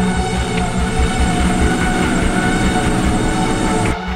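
Intro music of held tones over a steady low pulsing beat. Right at the end it switches abruptly to a sparser pulse.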